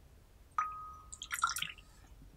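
Teaware clinking: one light clink with a short ringing tone about half a second in, then a quick flurry of small, high clinks.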